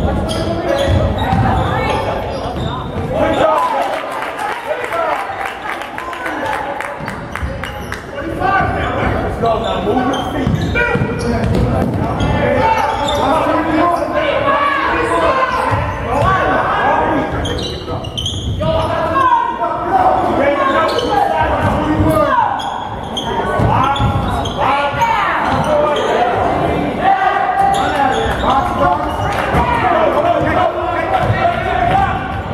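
Basketball being dribbled on a hardwood gym floor, bouncing again and again, under the steady talk of spectators, with the echo of a large gym.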